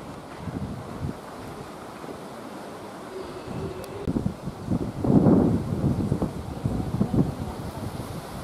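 Wind blowing on the microphone in uneven gusts, the strongest about five seconds in.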